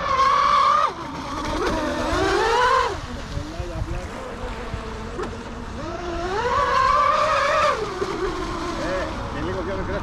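Model boat's motor running out on the water, its whine climbing in pitch on bursts of throttle and dropping back between them, three times.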